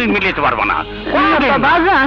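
Animated dialogue between a man and a woman in Bengali, over faint steady background music.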